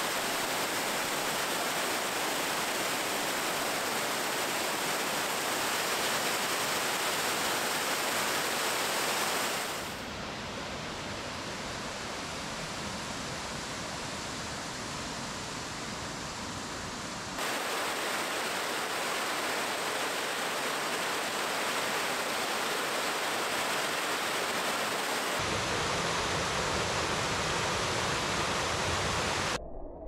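Bull Creek Falls, a 28 ft cascade, rushing steadily. The rush drops in level abruptly about ten seconds in, comes back louder about seventeen seconds in, changes tone again about twenty-five seconds in, and cuts off suddenly at the very end.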